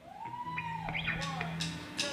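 Live rock band's instruments starting a song: a tone sweeps up and back down, then a low note is held while faint cymbal taps come in.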